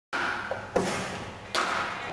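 Two sudden thuds in a large indoor hall, one under a second in and one about a second and a half in, each with a short echoing tail.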